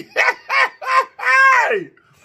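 A man laughing: three short voiced bursts, then a longer laugh that falls in pitch, as he recovers from choking on his food.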